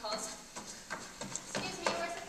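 An actor's footsteps on a stage floor: about five sharp knocks as she hurries across the stage, with brief indistinct voices.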